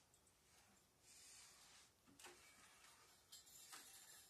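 Near silence with faint rustling and two soft knocks: an acoustic guitar being picked up off a bed and handled.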